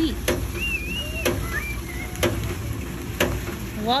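Hydraulic ram water pump working, its waste valve slamming shut with a sharp clack about once a second. Each clack is the valve stopping the rushing drive water and forcing it up into the pressure dome.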